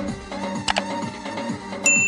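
Background music with the sound effects of a subscribe-button animation: a mouse-click sound about three-quarters of a second in, then a bright bell ding near the end that rings on.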